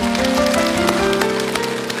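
Studio audience applauding over background music of held, steady notes.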